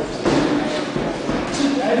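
Voices and shouts from the ringside crowd during an amateur boxing bout, with a few dull thuds from the boxers in the ring.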